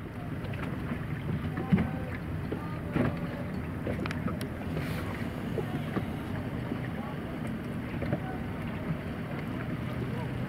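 Wind on the microphone and water washing around a boat on open sea, under a low steady hum, with a few small knocks.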